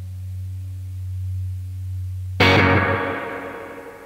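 Ending of a rock track: a steady low drone, then, about two and a half seconds in, a single loud distorted electric guitar chord is struck and left to ring out and fade.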